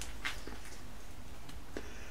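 Quiet background: a steady low hum with a few faint, soft clicks, and no clear event.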